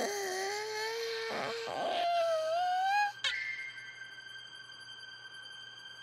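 Cartoon sick phoenix's long, drawn-out wailing cry, its pitch wavering and slowly rising. About three seconds in, it breaks into a thinner, steady high note that fades away.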